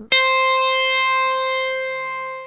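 Electric guitar, high E string: a right-hand tapped note at the 12th fret is pulled off, leaving the 8th-fret note (a C) held by the left little finger. That C rings as one long sustained note that starts suddenly and slowly fades.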